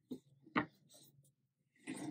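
Mostly quiet, with a few faint, brief rustles of cotton-blend yarn being drawn through crochet stitches with a crochet hook; the clearest is a short sharp one about half a second in.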